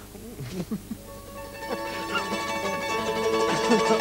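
A mandolin starts playing about a second in, a run of plucked notes that grows fuller toward the end. Over it a man's voice makes short sliding vocal sounds, a singer testing his voice.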